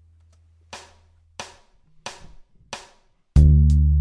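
A drum count-in of four evenly spaced clicks, about two-thirds of a second apart. Near the end a drum beat and a Fender Precision electric bass come in loudly, the bass playing a low pentatonic line.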